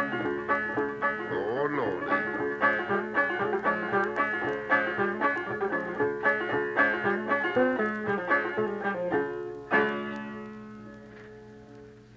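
Old-time banjo picking the closing instrumental bars of a traditional Appalachian tune in a quick, even run of plucked notes. It ends on a final struck chord about ten seconds in that rings out and fades away.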